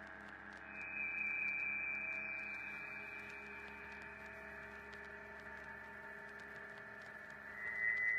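Dark ambient drone soundtrack: a steady layered hum of held tones, with a high whining tone swelling in about a second in and slowly fading, and another high tone entering near the end.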